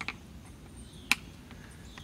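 Quiet handling of a plastic electric cooling fan as its blade is turned by hand inside the shroud, with one sharp click about a second in.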